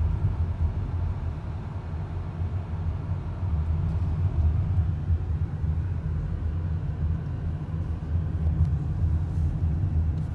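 Steady low rumble of a car on the move, heard from inside the cabin: engine and tyre noise.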